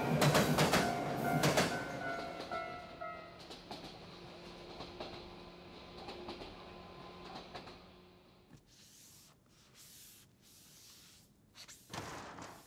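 Electric commuter train passing, its wheels clacking loudly over rail joints for the first two seconds or so while a held tone fades away. It then settles to a softer, steady running hum until about eight seconds in, followed by a few faint short hisses.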